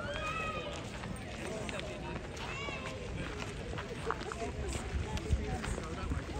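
Indistinct voices of people talking among a crowd of passers-by, with a higher-pitched voice just after the start, over a low steady rumble.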